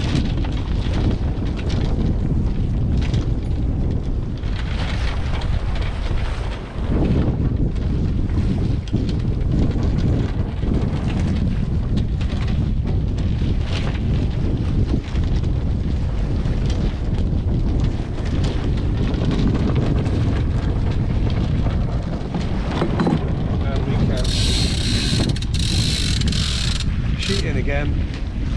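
Steady wind rushing and buffeting over the microphone on a sailing yacht's deck, with a few scattered knocks. Near the end comes a bright hiss lasting about three seconds.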